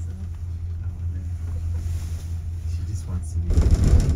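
Steady low rumble inside a moving gondola cabin riding the haul rope. About three and a half seconds in, a louder rumbling clatter builds as the cabin's grip rolls over a lift tower's sheave train.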